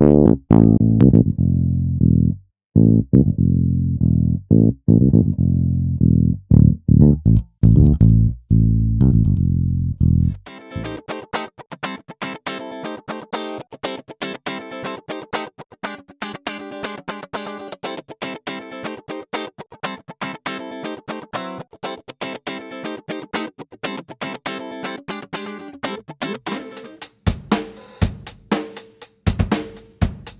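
A sampled bass guitar line played solo through a UAD-2 Eden bass amp plugin for the first ten seconds or so. Then a funk guitar part of quick, even rhythmic strumming, processed by a Softube Fix Phaser. Drum hits come in near the end.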